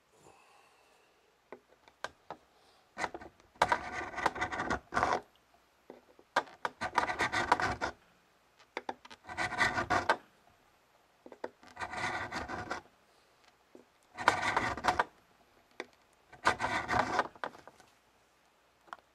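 A fret-crowning file worked back and forth over a guitar's metal frets, reshaping them after levelling. Six bouts of quick rasping strokes, each lasting a second or so, with short pauses between.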